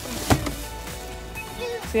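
A single sharp thump about a third of a second in, from someone climbing into a car, over background music.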